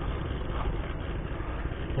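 Steady low rumble with an even hiss of outdoor background noise, with no distinct events.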